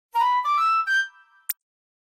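Short sound-logo jingle: a few bright notes stepping upward in pitch, then a brief high click about a second and a half in.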